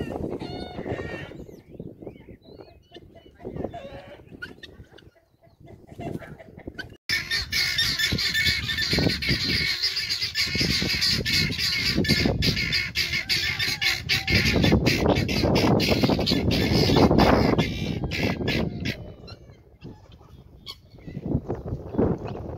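Helmeted guinea fowl calling with harsh, rapidly repeated cries. A few calls come at first, then from about seven seconds in a loud, dense chorus of many birds calling at once, easing off a few seconds before the end.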